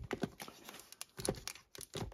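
Plastic CD jewel cases clicking and clacking against one another as they are flipped through by hand, an irregular run of light clicks.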